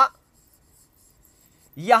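Faint scratching of a marker pen drawing an outline on a whiteboard.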